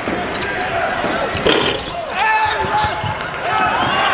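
Basketball bouncing on a hardwood court during live play, with short knocks from the ball and the loudest about a second and a half in.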